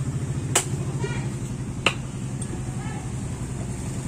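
Machete chopping into a young coconut on a wooden stump: two sharp chops about a second and a half apart as the coconut is split in half, over a steady low background rumble.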